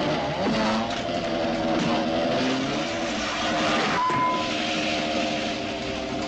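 Motorcycle engines running steadily, their pitch stepping up and down a little a few times.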